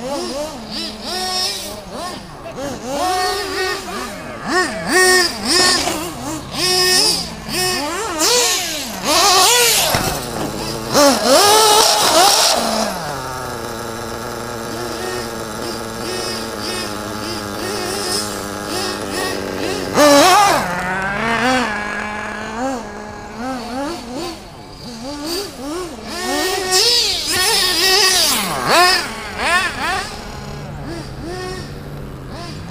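Radio-controlled cars racing on a dirt track, their motors repeatedly rising and falling in pitch as they speed up and slow down. For several seconds in the middle, one motor holds a steady pitch.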